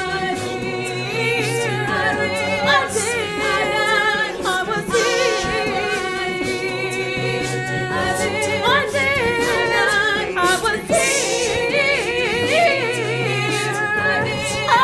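A mixed a cappella vocal group singing in layered harmony, with low bass notes recurring underneath.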